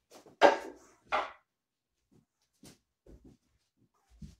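Wooden cane striking a wooden wing chun dummy: two sharp wooden knocks about half a second apart, near the start, then a few faint taps.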